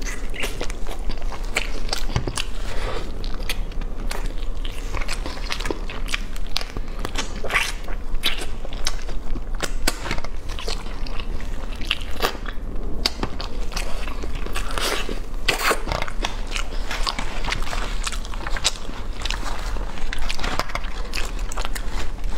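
Close-miked biting and chewing of roast chicken: wet mouth clicks and crunches come thick and irregular throughout, over a low steady hum.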